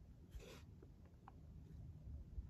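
Near silence: faint handling noise of a stylus against a tablet touchscreen, with a soft scuff about half a second in and a couple of tiny ticks.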